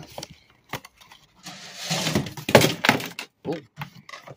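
Handling noise on a glass terrarium and its lid frame: scattered knocks, a scraping slide about one and a half seconds in, then a quick cluster of louder knocks and clatter.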